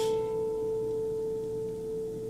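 Nylon-string classical guitar's top string ringing out on one sustained note, the A at the fifth fret, which ends a five-note minor-scale phrase. It is left to ring and slowly fades.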